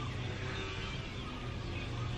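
Steady background noise with a faint low hum and no distinct event: outdoor room tone during a pause in talk.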